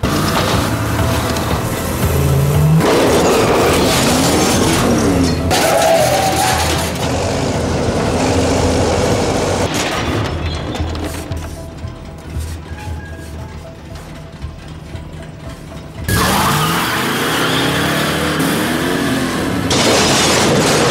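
Horror film soundtrack: music score over a car's engine running, with a sudden loud crashing stretch about four seconds before the end as the 1958 Plymouth Fury smashes into the garage office.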